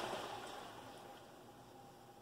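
Coconut milk poured from a can into a hot skillet of sautéed onion and garlic: the frying sizzle hisses and dies away within about a second as the liquid covers the pan, leaving only a faint sound.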